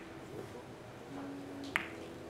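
Carom billiard balls clicking together once, sharply, near the end, as they roll after a three-cushion shot.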